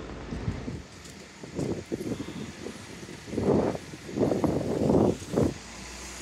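Double-decker bus running as it pulls past close by, with a few loud, rough, irregular bursts of noise over it in the second half.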